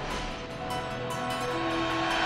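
The news channel's electronic theme music plays over the closing graphics, with held synth tones and a steady, quick percussive beat.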